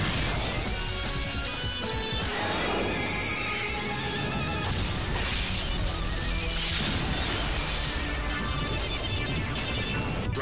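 Dramatic cartoon soundtrack music, with rushing whoosh sound effects from the racing machines a couple of times.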